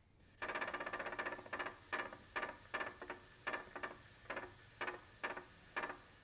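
Kangaroo rat foot-drumming: a fast roll of light thumps for about a second, then slower, separate drums spaced a third to half a second apart, growing fainter toward the end. The drumming is a signal that carries the drummer's individual identity and social status.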